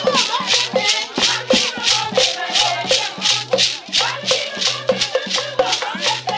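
Traditional Mankon song-and-dance music: rattles shaken in a steady quick rhythm, about five strokes a second, with voices singing over a low repeating tone.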